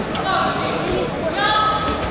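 People in a sports hall calling out, with a longer held shout near the end, over steady crowd noise.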